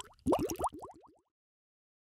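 Bubbling sound effect: a quick run of about ten short rising bloops that stops a little over a second in.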